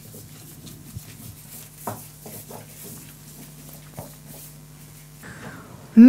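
A metal spoon spreading an egg and yogurt mixture over a sheet of yufka pastry: faint, soft scraping with a few light clicks, about a second apart near the start and again about four seconds in.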